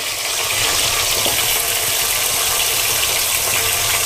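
Raw mutton pieces sizzling in hot oil, a steady even hiss.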